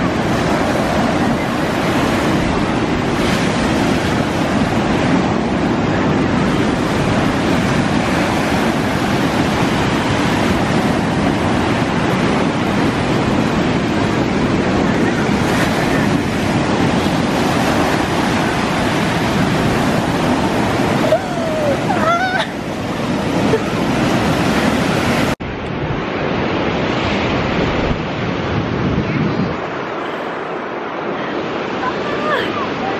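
Ocean surf breaking and washing up the sand in a steady rush of waves and foam. An abrupt cut comes near the end, after which the surf continues slightly duller.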